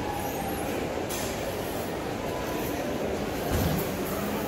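Steady shopping-mall ambience: a reverberant hubbub of distant voices and ventilation noise filling a large indoor atrium, with a brief low thump near the end.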